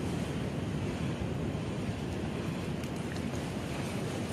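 Steady wind noise buffeting the microphone, a low, even rumble with a faint hiss of water behind it and no distinct events.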